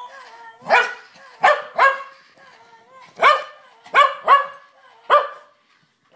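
Welsh terrier barking: seven sharp barks, several coming in quick pairs.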